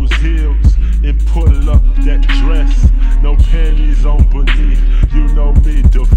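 Chopped-and-screwed hip hop track: a slowed, pitched-down beat with a heavy steady bass and drum hits, under slowed, deep-pitched rap vocals.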